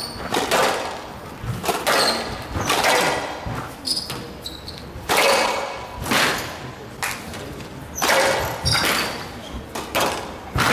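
Squash rally: the ball hitting rackets and walls about once or twice a second, each hit echoing round the hall, with short squeaks of shoes on the court floor between them.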